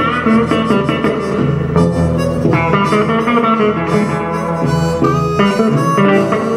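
Live blues band playing an instrumental passage: a blues harmonica, played cupped against a microphone, is prominent over electric guitars, bass and drums.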